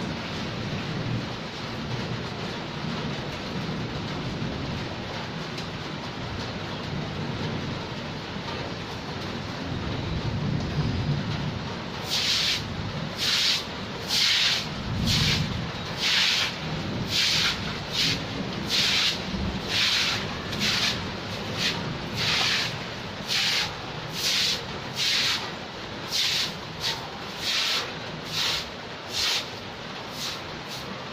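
Steady rain falling on a wet concrete yard. About twelve seconds in, a regular series of short swishing strokes starts, a little more than one a second, with a low rumble shortly after it begins.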